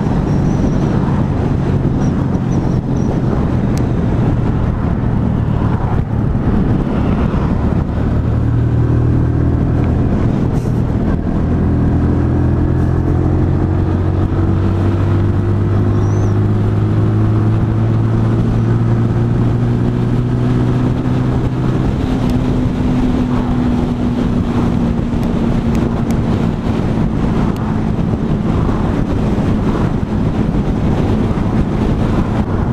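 Sinnis Outlaw 125cc motorcycle engine running steadily while riding at road speed, its note drifting slowly in pitch, under a constant rush of wind and road noise.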